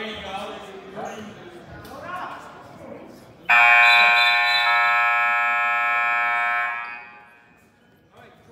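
Gym scoreboard horn sounding one long, steady blast of about three seconds, starting suddenly about three and a half seconds in: the signal that the wrestling match is over. Spectators' voices are heard before it.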